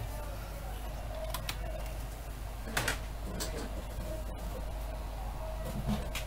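A steady low electrical hum with a few light clicks and taps, one about a second and a half in, one near three seconds and one at the very end.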